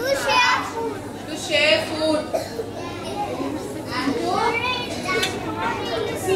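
Young children's voices speaking in short, high-pitched phrases.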